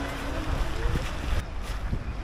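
Wind buffeting the microphone: a rough, uneven low rumble, with a voice trailing off at the very start.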